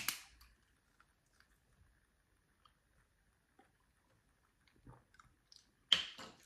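Screw cap twisted off a drink bottle, the seal breaking with one sharp click. Then near silence, with a few faint clicks and a sharper click just before the end.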